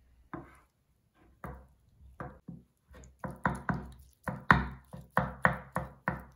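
Kitchen knife chopping mozzarella on a wooden cutting board. A few separate knocks come first, then quicker chopping at about three strokes a second from halfway through.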